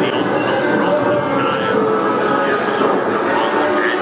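A dark ride's soundtrack and ride car: a steady, dense mix of voices over a rumbling, rail-like running noise.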